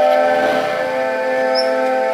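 Dramatic background score: a held chord of several steady tones, slowly fading.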